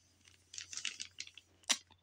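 Gloved hands handling and turning a paper-wrapped cardboard shipping box: a run of faint rustles and scrapes, then one sharp tap near the end.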